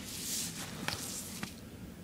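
A dead crow being handled, its feathers rustling as the wing is spread out: a short rustle followed by two light clicks.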